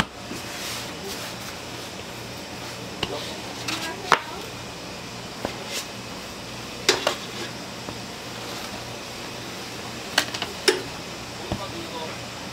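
Dough being worked by hand on a wooden table: scattered sharp knocks and taps as the dough and a plastic scraper meet the wood, over a steady low hum.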